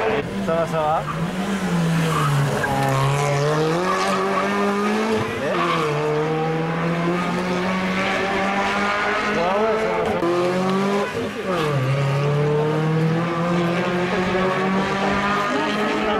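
Rally car engine heard approaching along the stage, its revs climbing and then falling sharply again and again as it shifts gear and brakes for corners.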